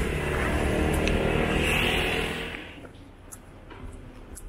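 A motorbike engine running close by, then falling away about two and a half seconds in, leaving quieter street noise with a few small clicks.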